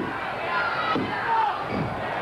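Wrestling crowd shouting and yelling together as a pin is being counted, a jumble of many voices.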